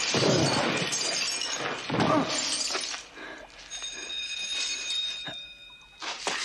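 Glass shattering and debris crashing down, with a man groaning twice. In the second half, loose shards clink and ring as they settle.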